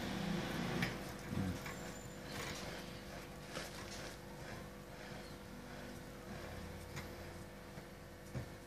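Quiet handling of a fishing rod and its wrapping thread on a workbench: a few soft clicks and rustles over a steady low hum.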